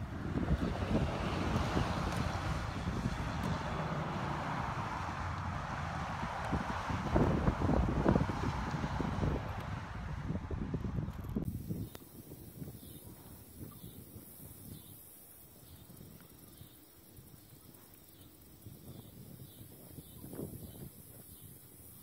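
A horse urinating: a long, steady splashing stream hitting the ground, mixed with wind rumbling on the microphone. It cuts off sharply after about eleven seconds, leaving only faint outdoor sound.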